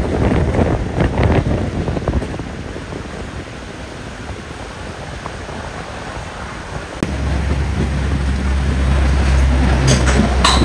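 Steady noisy outdoor ambience with some wind on the microphone. About seven seconds in it cuts to a louder steady low hum and hiss from pork ribs grilling on a wire rack.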